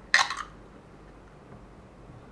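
A ring-pull aluminium can of Irn Bru cracked open: one sharp pop-and-fizz lasting about a quarter second just after the start, then quiet room tone.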